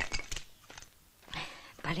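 An axe striking a knotty log: one sharp chop followed by a few smaller cracking knocks of wood. The log is not splitting.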